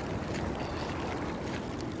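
Wind rumbling and hissing over a phone microphone: an even, steady noise, heaviest in the low end.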